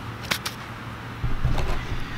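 Camera handling noise: low bumps and rubbing as the camera is picked up and moved, starting a little past halfway, after a light click shortly after the start. A steady low hum runs underneath.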